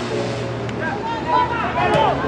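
Voices shouting and calling during play over a steady low hum, with a sharp knock near the end.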